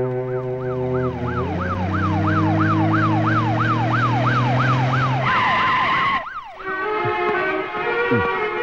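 Police vehicle siren wailing in rapid up-and-down sweeps, about three a second, over sustained film-score chords. Near the end it shifts briefly to a steady tone, then cuts off about six seconds in, and the music carries on.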